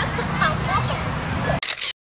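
Outdoor ambience of people's voices. About a second and a half in, it ends with a short sharp burst of noise, and then the sound cuts out entirely.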